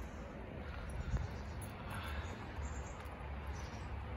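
Quiet outdoor background with a low steady rumble and a faint click about a second in; no engine or other clear event.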